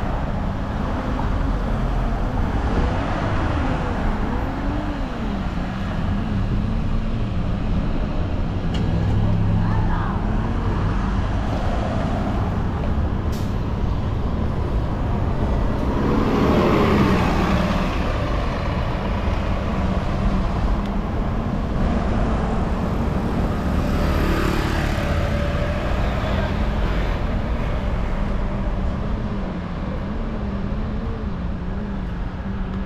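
City street traffic at an intersection: idling and passing cars, with a transit bus's engine growing louder as it passes close by about halfway through. A second swell of noise, reaching higher, follows several seconds later.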